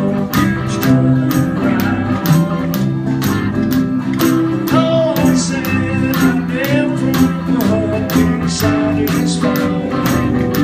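A small live band playing: a strummed acoustic guitar and drums with a cymbal keeping a steady beat, and a man singing over them.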